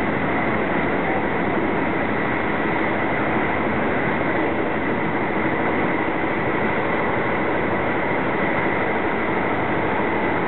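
Steady rumble and rush of a passenger train running at speed, heard from inside the carriage, with a thin steady high tone over it.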